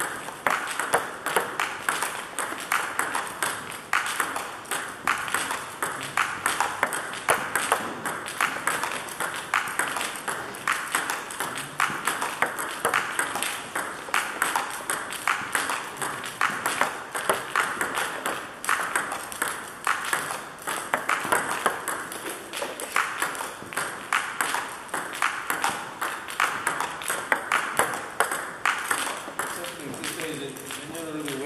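Celluloid-type table tennis ball clicking back and forth off bats and the table top in a continuous practice rally, a quick, even run of sharp clicks.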